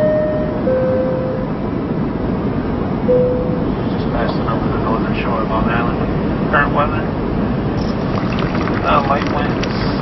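Steady background rumble with a falling two-note chime at the start and another short tone about three seconds in; indistinct voices talking in the background from about four seconds in.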